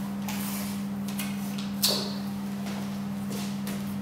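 Steady low hum of an overhead projector's cooling fan running, under rustling and handling of paper and objects on a table. A sharp click with a short ring a little under two seconds in.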